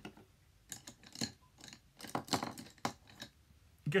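A small pump spray bottle of isopropyl alcohol spritzed several times, in short separate bursts of spray, to activate an alcohol-activated makeup palette.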